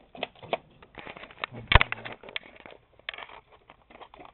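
Scattered plastic clicks and knocks from Nerf blasters and foam darts, with one louder sharp knock a little under two seconds in.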